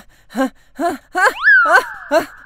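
A cartoon character's voice making short, breathy gasps in a steady rhythm, about two or three a second, like panting. About halfway through there is a quick glide that rises and then falls.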